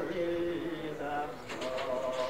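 An unaccompanied voice singing, holding long steady notes: a low one first, then a higher one about a second in. It sounds like a home cassette recording in a small room.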